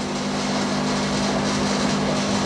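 Steady electric hum of aquarium air pumps running, a low drone of a few held tones under a hiss that stays even throughout.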